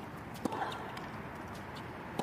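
Tennis ball during a hard-court rally: one sharp pop of ball on racket or court about half a second in, among a few fainter taps, over a steady low background hum.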